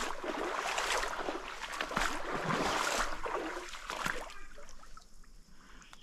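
Footsteps wading and sloshing through shallow creek water and mud, dying down about four and a half seconds in.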